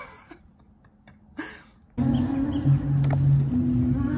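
A short laugh, a breath, then about halfway through loud live music from a festival stage's PA starts suddenly, with deep bass notes held about a second each over crowd noise.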